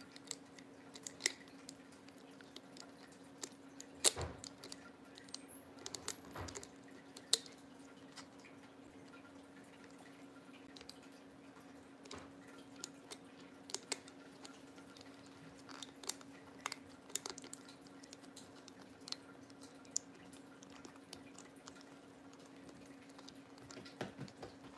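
Scattered light clicks and taps of hands working the hanger cap onto a glittered ornament, a cap that will not go on. The sharpest clicks come around four to seven seconds in, over a steady low hum.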